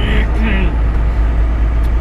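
Inside the cab of a Volvo 780 semi truck at highway speed: the Cummins ISX diesel drones steadily under a constant rush of tyre and road noise.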